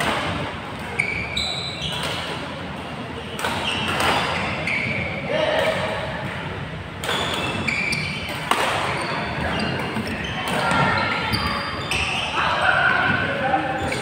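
Badminton in a large echoing sports hall: rackets striking the shuttlecock in sharp cracks, sneakers squeaking in short high squeals on the court floor, and players' voices over a steady hall din.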